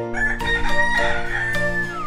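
Cartoon rooster crowing one long cock-a-doodle-doo over background music. The call ends in a falling glide near the end.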